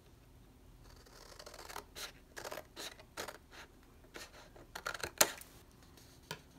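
Fiskars micro-tip scissors snipping through white cardstock in a string of short, separate cuts, the sharpest one about five seconds in.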